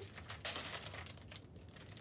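Clear plastic zip-top bag being pulled open at its seal and handled, the plastic crinkling and crackling, most densely in the first second.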